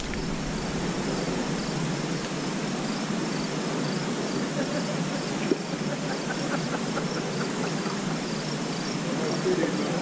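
Crickets chirping in a steady run of short, evenly spaced high chirps, over a constant background hiss.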